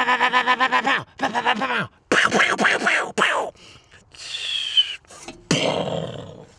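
A man imitating machine-gun fire with his voice: several bursts of rapid rat-a-tat pulses, about ten a second. Then a thin high tone about four seconds in, and a short rough burst near the end.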